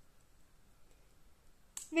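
Near-quiet room with a couple of faint, short clicks of thin metal double-pointed knitting needles as stitches are moved from one needle to the other; a woman's voice begins near the end.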